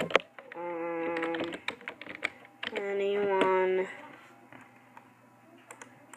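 Light tapping and clicking of typing on a device's keyboard, with two held hummed notes of about a second each, the second a little higher.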